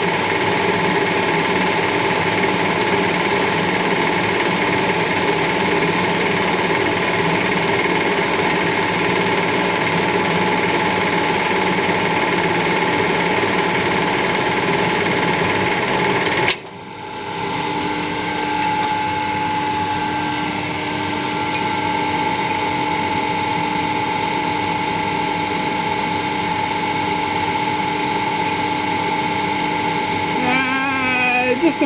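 Metal lathe running steadily with its chuck turning while cutting a .875 UNF screw thread on a shaft. About two-thirds of the way through the noise breaks off abruptly and comes back as a quieter, steadier hum with a few held tones.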